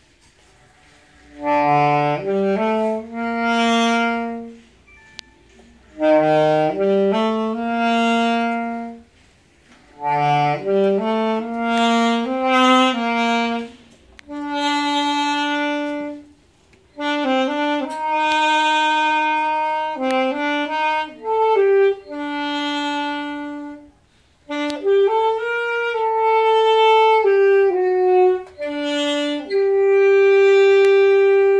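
Solo saxophone playing an unaccompanied melody in short phrases, with brief breath pauses between them, ending on a long held note.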